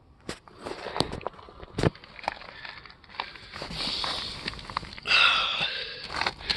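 Footsteps and handling noise: scattered clicks and knocks with rustling, louder about five seconds in.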